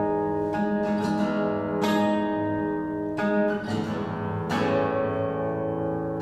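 Steel-string acoustic guitar played solo: chords struck about every second or so and left to ring between strokes.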